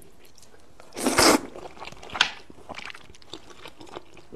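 Close-miked eating sounds of thick spicy fried rice noodles: soft wet chewing and small mouth clicks, with a short, loud, noisy burst about a second in and a sharp click a little after two seconds.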